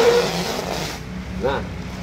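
Woven plastic sack rustling as it is pulled back off a bale of used sneakers, a loud rustle that fades out about a second in.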